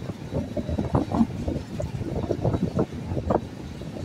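Running noise of a passenger train heard from an open coach door: the rumble and clatter of wheels on track, with wind buffeting the microphone in uneven gusts. It is mixed with the rumble of a goods train of open wagons passing on the next line.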